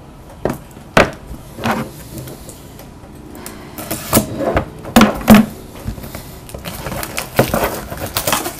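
Small silver trading-card boxes being handled on a desk: sharp knocks and clacks as they are picked up and set down, about seven in all, the loudest pair about five seconds in, with busier rattling toward the end.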